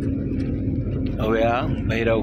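Steady engine hum and road rumble of a passenger van, heard from inside the cabin while it drives. A person's voice speaks over it in the second half.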